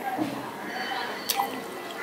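Close-up wet mouth sounds of soft ripe papaya being chewed: squishy smacking with small wet clicks and one sharper click a little past halfway.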